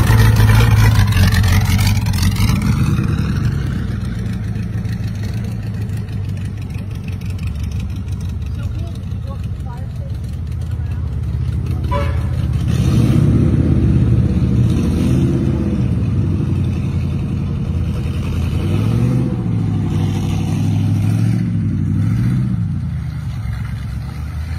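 The Studebaker straight-eight engine of a 1932 Studebaker Indy racer replica drives past loudly at the start. Its engine note then rises and falls in pitch several times in the second half as it accelerates away.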